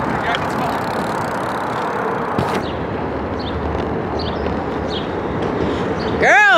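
Steady wind and road noise rushing over the camera's microphone while riding a bicycle, with a few faint clicks and a light knock about two and a half seconds in.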